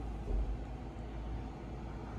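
Low steady rumble with a faint hiss, swelling briefly about a third of a second in, heard inside a car cabin.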